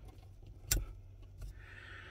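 One sharp plastic click under a second in, as a wiring-harness connector snaps into the back of a car's windshield-mounted lane-keep camera, followed by a faint rustle of the wires near the end.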